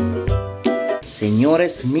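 Background music with a steady beat for about the first second, cutting off suddenly. Then rice and fideo noodles sizzle as they fry and are stirred in a pot.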